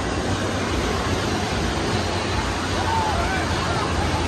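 Wave pool surf breaking and churning around the legs, a steady rush of water, with faint distant voices of swimmers.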